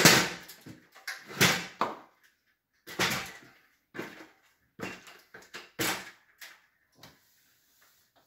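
Plastic parts of an air conditioner being handled: about ten irregular knocks and clatters, the loudest right at the start.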